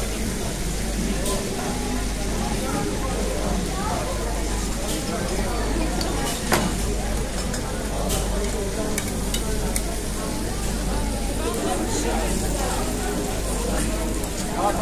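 Sliced steak sizzling on a heated serving plate as hot beef stock is poured over it from a saucepan, with voices murmuring around it. A single sharp click about halfway through.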